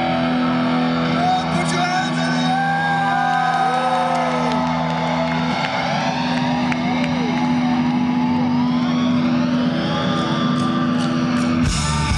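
Live rock band's electric guitars through a PA: a held low chord with swooping, pitch-bending notes and feedback over it. The held chord cuts off just before the end as the full band comes in.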